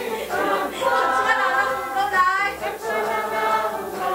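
A congregation singing a worship song together, many voices holding long notes, with one wavering note a little after two seconds in.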